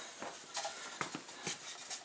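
Faint light knocks and rubbing as a wooden hat rack is handled and lifted off a metal step ladder, a few separate taps about half a second apart.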